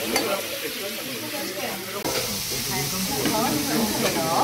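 Sliced duck meat sizzling on a ridged grill pan over a tabletop gas burner, with metal tongs turning the meat and clicking against the pan near the start. The sizzle grows louder about halfway through.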